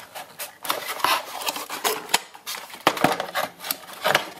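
Paperboard packaging insert rustling and scraping as a black plastic mounting plate is worked out of it, with irregular small clicks and knocks of plastic against card.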